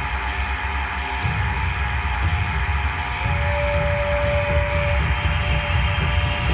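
Dark ambient film score: a low rumbling drone under steady held tones, with a single higher note held from about three seconds in until about five seconds in.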